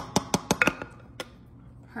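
Knife blade tapping and clicking against the bottom of a glass baking dish while cutting through a cheesy casserole: a quick run of clicks in the first second, then one more.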